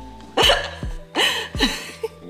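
A woman laughing in three short, breathy bursts.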